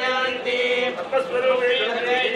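A Hindu temple priest chanting mantras: one man's voice reciting in a steady, held monotone.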